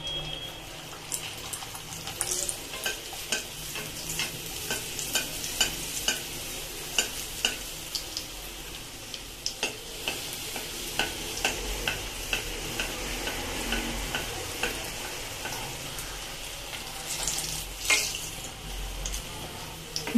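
Hot oil in a kadai sizzling steadily with frequent sharp crackles as a round of dough is slid in and deep-fried, puffing up as it cooks.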